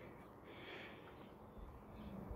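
Near silence: faint outdoor background noise.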